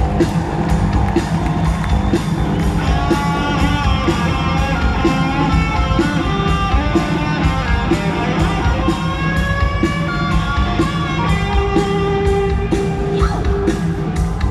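Live rock band playing an instrumental vamp: drums and bass keeping a steady beat, with electric guitar lines over the top.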